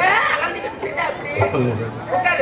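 A man's voice talking animatedly through a stage microphone and loudspeakers, with a low steady hum joining about one and a half seconds in.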